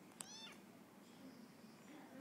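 A kitten gives one short, high-pitched meow, about a quarter of a second in.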